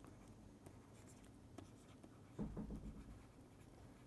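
Faint scratching and tapping of a stylus writing on a pen tablet, mostly near silence, with a short run of pen strokes a little past halfway.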